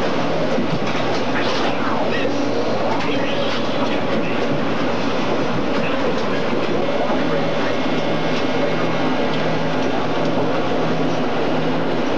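Steady machine-room noise from a television station's equipment racks and reel-to-reel videotape machines: a loud, even whir of cooling fans and running machinery with a faint low hum.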